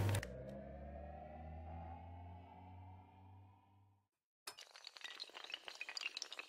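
Animation sound effects: a sustained tone with many overtones, rising slowly in pitch and fading out over about four seconds. After a brief silence comes a rapid, irregular clatter of small sharp clicks and clinks, like a row of dominoes toppling.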